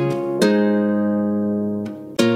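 Instrumental passage of a Punjabi pop track with no vocals: a plucked, guitar-like chord is struck about half a second in and rings out, slowly fading, before the next note is plucked near the end.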